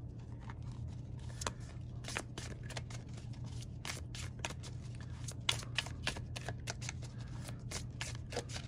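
A thin-cardstock tarot deck being shuffled by hand: a run of quick, irregular card flicks and slaps as the cards pass between the hands.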